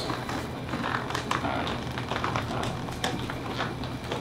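Light scattered taps and scuffs of shoes on a stage floor as actors step and shift into a crouch, over a steady low hum of room noise.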